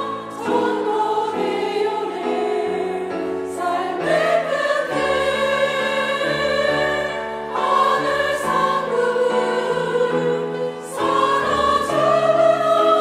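Church choir singing a Korean hymn in parts with instrumental accompaniment, long held notes changing every second or two.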